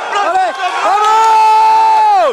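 Shouting from the mat side: a couple of short yells, then one long, drawn-out shout held for over a second that drops away at the end, urging on a jiu-jitsu fighter as he finishes a submission attempt.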